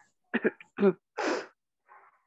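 A person clearing their throat and coughing: a few short throat sounds, then one longer, breathier cough a little over a second in.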